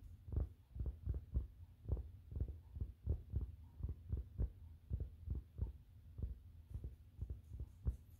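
Fingertips and long nails tapping on a fabric surface close to the microphone: a run of muffled, low thumps, about two or three a second and unevenly spaced.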